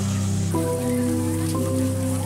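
Instrumental background music with held notes, over a steady sizzling hiss of cake batter cooking in a metal mould pan.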